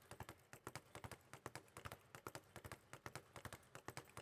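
Leather speed bag struck lightly with bare fists, rebounding off a wooden platform: a faint, rapid, even patter of taps. The bag is hit quietly, back and forth.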